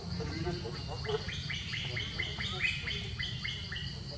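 A bird sings a quick run of about ten repeated chirping notes, about four a second, starting about a second in and stopping just before the end. A steady high-pitched whine and a low background rumble run underneath.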